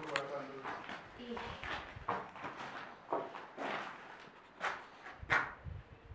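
Indistinct speech in short, irregular bursts.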